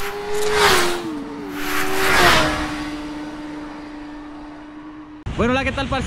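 Intro sound effects: two whooshes over a steady hum that steps down in pitch and fades away. A man starts talking near the end.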